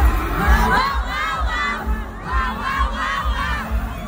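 Arena crowd of concert fans screaming and cheering loudly, many high voices overlapping, with a low thud about twice a second underneath.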